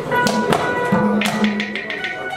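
Haryanvi ragni band's live accompaniment starting up: a few sharp percussion strikes over a steady, held instrument tone.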